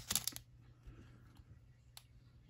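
Brief rustling and crackling of trading cards and pack wrapper being handled in the first half-second, then quiet room tone with one faint click near the end.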